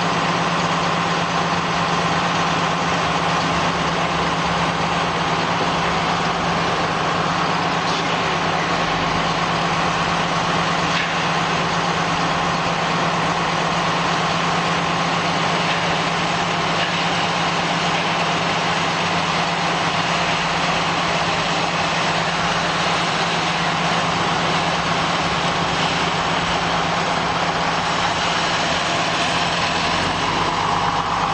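Steady machinery noise of a backhoe loader assembly line: a constant low hum under a loud hiss, with no breaks or changes.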